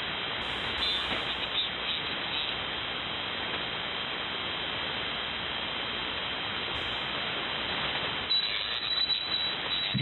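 Steady hiss of band noise from a single-sideband amateur radio receiver on the 75-metre band, heard between transmissions, with a faint steady high whistle in it and a few crackles near the end.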